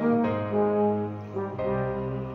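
A student instrumental ensemble playing a slow song, with brass, trombone among it, in front and several notes sounding together over a low bass line.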